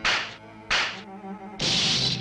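Cartoon fight sound effects: two sharp swishing hits about two-thirds of a second apart, then a longer, louder swish near the end, over faint background music.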